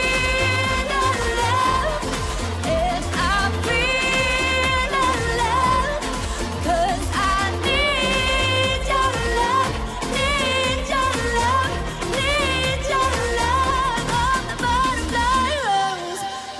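A woman singing a pop ballad live, holding long notes with vibrato, over a full pop accompaniment with a steady bass beat.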